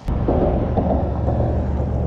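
A steady low engine rumble that starts abruptly with a click.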